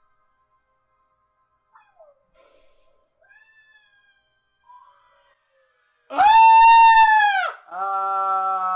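A loud, drawn-out, meow-like cry that arches in pitch and falls away about six seconds in. It is followed by a second, lower and buzzier cry near the end. Faint scattered sounds come before them.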